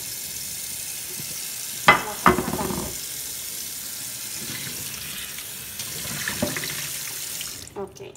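Kitchen faucet running steadily into a stainless-steel sink, with two sharp knocks about two seconds in as the containers are handled. The water cuts off just before the end.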